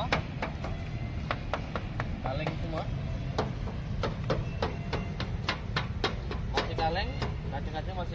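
Knuckles rapping on the steel door panels of a Honda Mobilio: quick tapping knocks, several a second in uneven runs, moving along the body. The panels sound like bare metal with no body filler, which the inspector takes as a sign of original, unrepaired bodywork.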